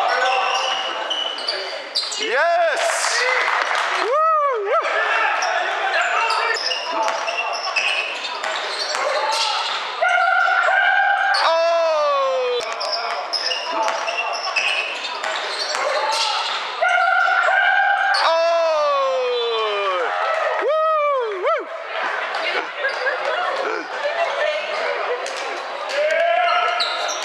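Basketball game in a large hall: the ball bouncing on the hardwood floor, short sneaker squeaks, and shouting from players and spectators, with two long cheers that fall in pitch, one near the middle and one about two-thirds through.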